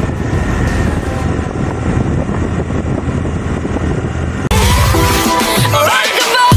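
Scooter riding noise, engine and wind rushing on the microphone. About four and a half seconds in it cuts abruptly to loud electronic outro music with a rising sweep.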